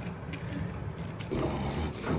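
A hand rummaging in a glass jar of goat treats: a few clicks and rustles of the treats against the glass over a low steady rumble.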